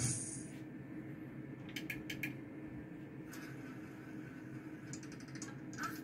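Roulette gaming machine between spins: a steady low hum, with two short runs of rapid clicks, about two seconds in and again near the end, as the next stake is placed.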